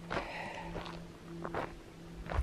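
Footsteps of a hiker walking over the forest floor, an uneven crunch about every half second, over a faint steady hum.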